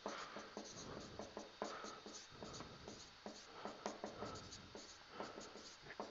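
Marker pen writing on a whiteboard: faint, quick scratchy strokes and small taps as a line of words is written.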